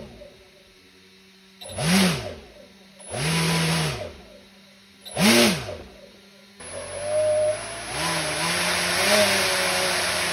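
Electric R/C motor spinning a two-blade propeller in short throttle bursts. The pitch rises and falls about two seconds in, holds for about a second near three seconds, and blips again near five seconds. From about seven seconds it runs continuously with small rises and falls in pitch.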